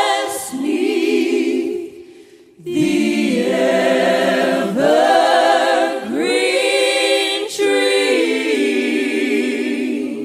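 A group of voices singing a slow gospel hymn in harmony, with long held notes and vibrato. The voices break off for a short breath about two seconds in, then carry on.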